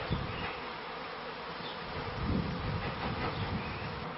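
Honeybee swarm buzzing: a steady, dense hum of many bees.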